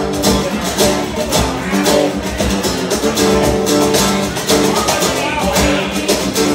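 Live acoustic rock: an Ovation acoustic-electric guitar strummed in a steady, driving rhythm, with hand percussion keeping the beat underneath. This is the instrumental intro, before any singing comes in.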